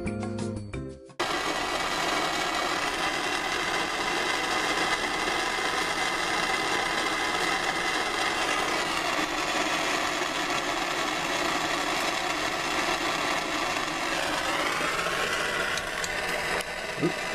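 Brief music for about the first second, cut off abruptly, then a MAPP gas hand torch burning with a steady, even hiss.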